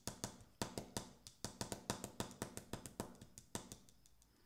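Tarot cards being handled, a rapid, uneven run of light clicks from the card edges, several a second, stopping shortly before the end.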